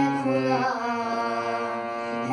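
A boy singing a Hindi devotional bhajan melody to his own harmonium accompaniment, the harmonium's reedy chords held steadily under a slow, sustained vocal line.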